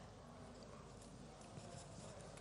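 Near silence: faint hall room tone with a few faint taps.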